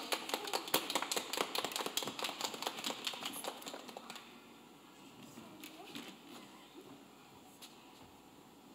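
Applause: a burst of hand clapping that dies away about four seconds in.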